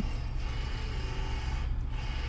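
Steady low hum inside a car's cabin.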